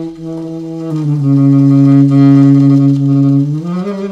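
Alto saxophone holding a long low note near the bottom of its range. About a second in it drops a little lower and gets louder, holds, then slides back up near the end.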